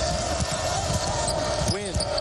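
A basketball being dribbled on a hardwood court, several short bounces over the steady noise of a large arena crowd.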